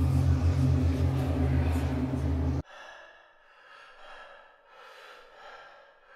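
A loud, deep rumble cuts off suddenly about two and a half seconds in. It is followed by a man's quieter, heavy breaths and gasps, about one a second.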